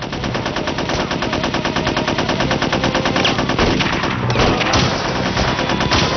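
Machine gun firing long, rapid automatic bursts, an even stream of shots with a short break past the middle before the firing picks up again.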